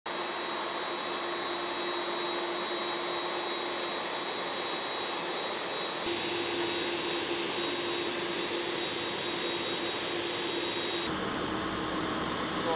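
Boeing 767 airliner's jet engines running on the apron: a steady rushing noise with a high whine and a lower hum. The sound changes abruptly about halfway through and again near the end.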